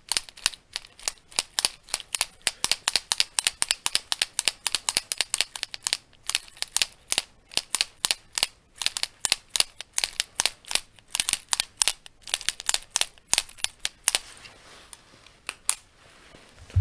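Rapid sharp clicks from a fancy pen worked right at the microphone, about four a second, stopping about fourteen seconds in.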